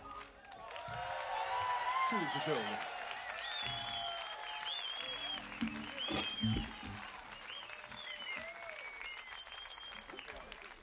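Audience applauding and cheering, with shouts and whoops over the clapping. It swells in the first few seconds, then slowly thins out.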